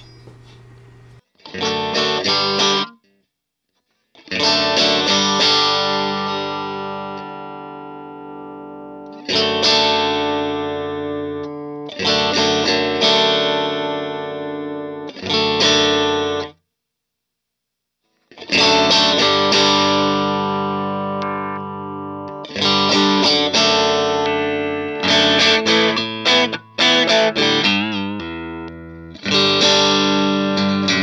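Electric guitar played through a 1966 Fender Bassman amplifier into an open-back cabinet: chords struck and left to ring out and decay, with two short pauses and quicker, choppier playing near the end.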